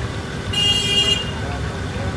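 A vehicle horn sounds once, a steady high-pitched toot lasting well under a second, starting about half a second in, over a continuous low rumble of busy street and shop noise.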